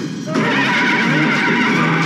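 A man's loud, wavering laugh over dramatic background music.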